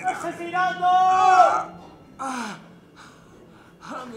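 A man moaning and gasping in pain from a stab wound. A long drawn-out moan that falls at its end comes in the first second and a half, a shorter falling groan follows about two seconds in, and then faint breaths.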